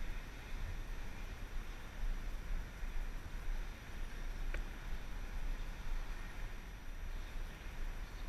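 Wind buffeting the microphone outdoors, heard as a low, uneven rumble that swells and fades, with one faint click about halfway through.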